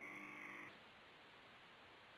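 Near silence on a telephone conference line: a faint, brief steady tone lasting under a second, then only faint line hiss.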